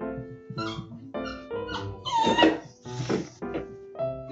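Background piano music with a dog vocalising twice, in two short, loud calls about two and three seconds in.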